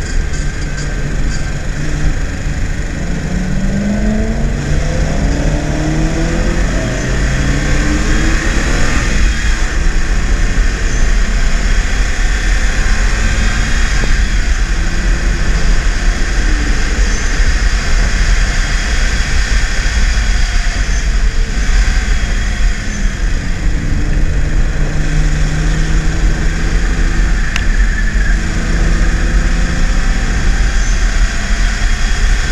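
BMW E36 328is straight-six heard from inside the cabin, accelerating hard through the gears: the engine pitch climbs, drops back at each upshift, and climbs again three times in the first several seconds. It then runs at steadier revs under a constant heavy rumble of road and wind noise.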